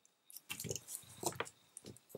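Faint handling noise from a plastic fountain pen and its cap: a few soft clicks and rubs as the parts are fitted together and shifted in the hands.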